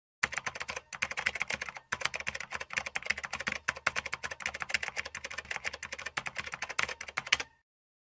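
Typing sound effect: a rapid run of key clicks that pauses briefly twice in the first two seconds and stops suddenly near the end.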